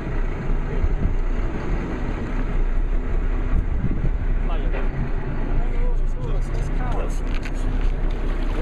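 Boat engine idling with a steady low hum. Faint voices come in briefly around the middle and again near the end.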